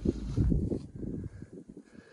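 Wind buffeting the microphone: an uneven low rumble that rises and falls, dying down near the end.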